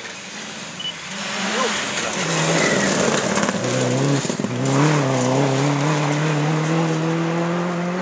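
Subaru Impreza rally car's turbocharged flat-four engine at full throttle as the car slides through a gravel bend, with gravel spraying from the tyres. From about halfway through, the engine note climbs steadily as it pulls away under hard acceleration in one gear.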